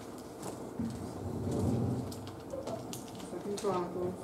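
Faint, indistinct voices murmuring in a quiet hall, with a few light clicks. A short voice sounds near the end.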